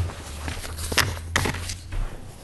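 A few sharp knocks and handling noises at a meeting table, the loudest about a second in, over a low steady hum.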